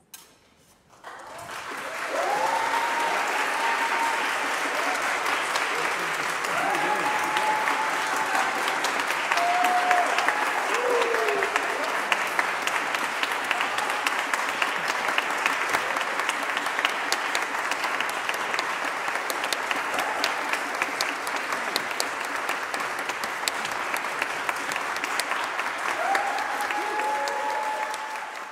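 Concert hall audience applauding: the clapping breaks out about a second in and stays loud and dense throughout. Voices call out above it several times.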